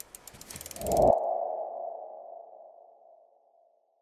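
Logo-reveal sound effect: a fast run of ticks, about ten a second, swells into a ringing tone about a second in, which then fades away over the next two seconds.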